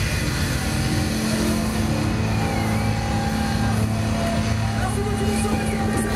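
Live band's distorted electric guitar and bass holding one low note, a steady engine-like drone ringing out at the close of a punk/hardcore song.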